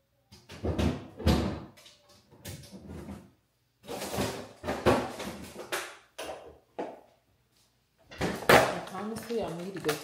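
Kitchen handling sounds: a refrigerator door opening and closing, and a plastic food container and eggs set down on a stone countertop, in a series of separate knocks and rustles.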